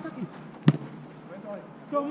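A football kicked once, a single sharp thud about two-thirds of a second in, with players calling out around it.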